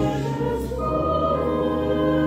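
Congregation singing a hymn with instrumental accompaniment in long, held notes.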